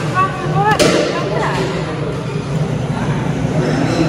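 Indistinct voices over a steady low hum, with one sharp click about three-quarters of a second in.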